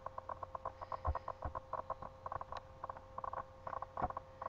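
A computer mouse being worked: a rapid, irregular run of faint small clicks, several a second.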